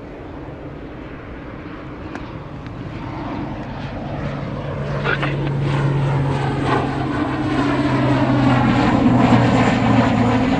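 Propeller airliner engines droning, growing steadily louder, with a steady low hum coming in about four seconds in.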